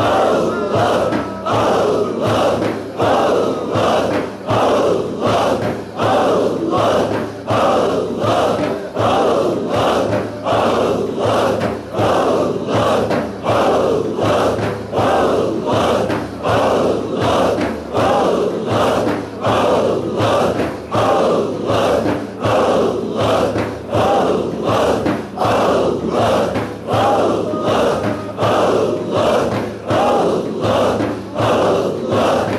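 A group of voices chanting dhikr in unison, a steady rhythmic chant whose loudness dips briefly about every two seconds.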